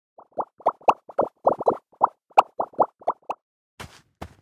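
Sound-effect plops, like bubbles popping: about fifteen short, pitched blips in quick, irregular succession. A softer, noisier hit follows just before the end.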